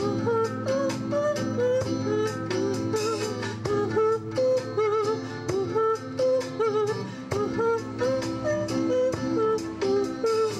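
Live acoustic music: a woman singing a wavering melody with vibrato over strummed acoustic guitars.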